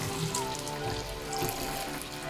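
Bathroom sink faucet running a steady stream of water into a plastic tub holding trumpet parts, under background music.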